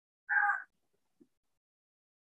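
A single short pitched call, under half a second long, about a quarter second in, against otherwise silent video-call audio.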